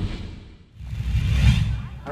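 Intro sound effects: a whoosh over a deep bass rumble fades out about half a second in, then a second whoosh swells up and stops near the end.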